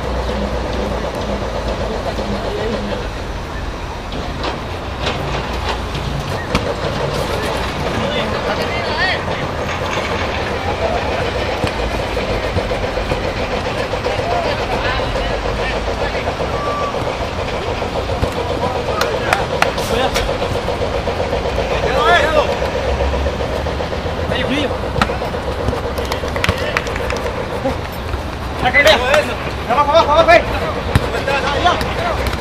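Footballers shouting and calling out during a match, several louder shouts near the middle and the end, over a steady background drone and low rumble.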